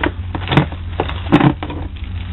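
Handling noise of items being moved and set down in a plastic storage tote: about four short knocks and clatters over a steady low hum.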